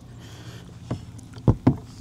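A heavy, roughly 60-pound LiFePO4 battery being set down into a plastic RV battery box: a faint knock, then two sharp thumps about a second and a half in as it drops into the tray.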